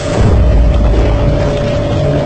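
A deep, loud low rumble swells in a moment after the start and holds, under a steady sustained drone note of a horror film score.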